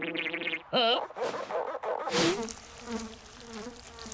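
Cartoon sound effects: a buzzing drone at the start, a quick wobbling warble about a second in, then sweeping whooshes and faint wavering tones.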